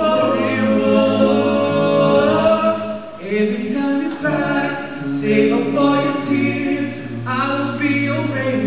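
Male barbershop quartet singing a cappella in close four-part harmony. The held chords shift about three seconds in and again about seven seconds in.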